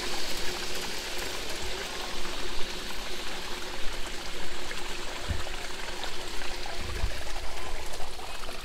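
Steady rush of running water, as from a small stream or garden water feature, with a few low thumps about five and seven seconds in.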